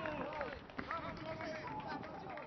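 Men's voices shouting and calling across an outdoor rugby pitch, several at once, with scattered short knocks.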